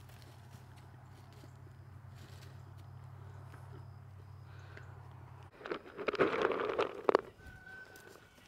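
Ponies jostling at a treat bucket. About five and a half seconds in comes a loud burst of rustling and knocking, lasting under two seconds, as the bucket is knocked out of hand and the treats spill, over a faint low hum.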